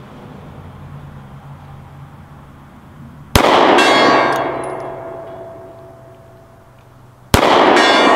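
Two shots from a Springfield EMP 9mm 1911 pistol, about four seconds apart. Each one hits a hanging round steel plate, which clangs and rings down over about three seconds.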